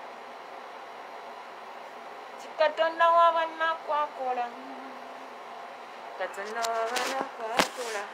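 A steady hum of room noise, with a woman's voice heard in two short stretches, about three seconds in and again near the end. A sharp knock sounds just before the end.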